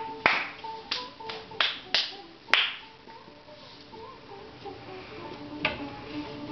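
A quick series of sharp snaps, six within the first two and a half seconds with the last the loudest, and one more near the end, over music playing steadily in the room.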